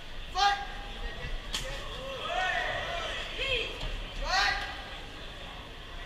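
Ringside voices shouting loud drawn-out calls at a kickboxing bout: a call about half a second in, a longer stretch of calling from about two to three and a half seconds, and another call at about four and a half seconds, over a background crowd hum. A single sharp knock about one and a half seconds in.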